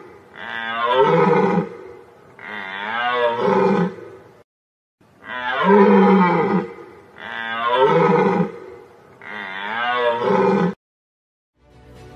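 Deer calling: long, deep pitched calls that bend in pitch, three in a row, a short pause, then three more.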